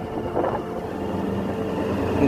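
Motorcycle running at riding speed, a steady engine sound mixed with road and wind noise.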